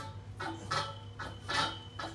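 Hand conduit bender forcing inch-and-a-quarter EMT steel conduit around its shoe, giving a few short squeaking creaks under heavy foot and handle pressure.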